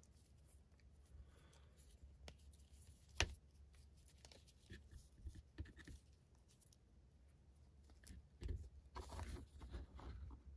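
Faint handling of an action figure being posed: light clicks from its joints, the sharpest about three seconds in, and soft rustling of its cloth jumpsuit near the end.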